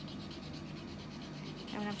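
Paper tortillon (blending stump) rubbed on sandpaper in quick, repeated scratchy strokes while being twisted, sharpening its point and wearing off the blue pastel on its tip.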